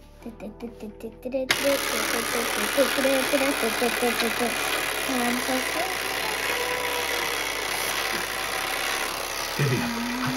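Perfection game's wind-up pop-up timer ticking rapidly and evenly, about four ticks a second, as it counts down. About a second and a half in, background music comes in over it.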